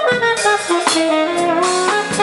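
Live jazz-funk fusion band playing: a tenor saxophone plays a melody of changing notes over drum kit and electric bass.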